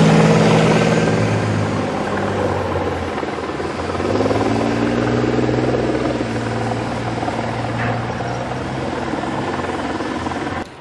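Heavy engines running in a steady low-pitched drone. The pitch shifts and climbs about four seconds in.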